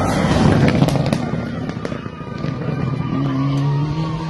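Rally car passing close at speed on a gravel road, its engine loud with a burst of sharp cracks, loudest in the first second or so.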